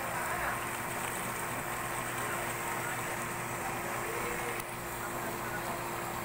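Steady outdoor background noise with a faint constant hum, and a faint distant voice about four seconds in.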